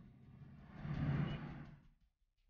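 Low rumble of a van and the street traffic around it, heard from inside the van with its sliding door open. It swells about a second in and fades out near the end.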